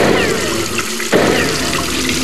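Sound effect of water spurting from a leak. A fresh gush starts suddenly at the start and again about a second in, each with a falling whistle over the rush of water.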